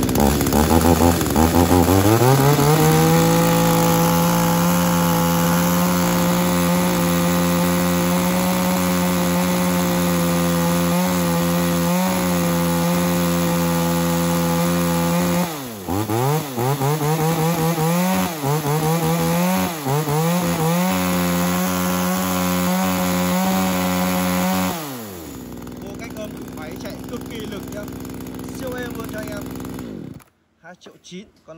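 Echo 3901 two-stroke chainsaw test-run: it revs up from idle to full throttle and holds it steady. About halfway through, several quick throttle blips make the pitch swing up and down; it then holds full throttle again before dropping back to idle and cutting out at the very end.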